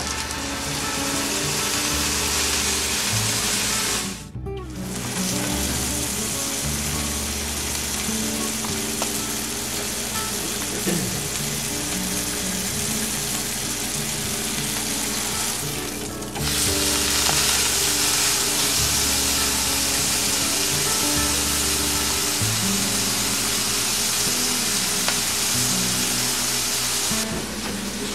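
Beef tenderloin searing fat side down in a hot frying pan, sizzling steadily as the fat renders. The sizzle drops out briefly about four seconds in and again around sixteen seconds.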